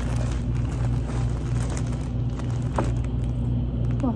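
Steady low rumbling hum in the background, with faint crinkling of plastic wrap and paper as packs of yarn are handled and taken from a paper bag.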